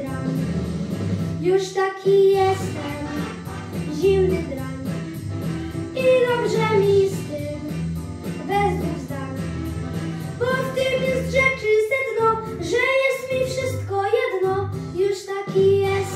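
A boy singing into a microphone over a recorded pop-swing backing track with a steady bass and beat.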